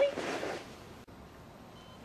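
A voice finishing the words "Excuse me?", then quiet room tone with a faint click about a second in.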